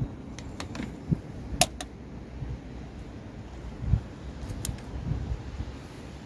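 Pliers and a coolant hose being handled under a car's bonnet: a few scattered small clicks, the sharpest a little after a second and a half in, and a dull thump near four seconds, over a low steady rumble.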